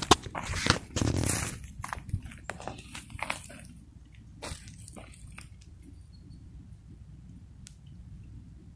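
Footsteps crunching and rustling through dry leaves and twigs on a forest floor, irregular and close for about the first four seconds. They then fade out, leaving a low steady rumble and an occasional faint tick.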